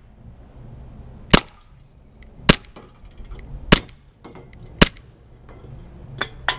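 Glock 17 gas blowback airsoft pistol firing four single shots, each a short sharp crack, a little over a second apart.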